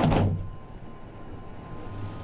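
Ferris wheel gondola door closing at the very start. The outside noise cuts off sharply as it shuts, leaving a quieter low hum inside the closed cabin.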